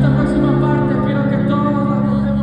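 Live band music played over an arena sound system and recorded from the audience: a new chord comes in at the start and is held steady.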